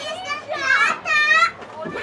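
High-pitched shouting voices: a short call about half a second in, then a longer held call that stops about a second and a half in.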